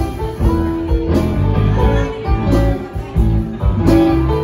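Live rock band playing an instrumental passage, with electric guitar to the fore over bass guitar, drums and keyboard.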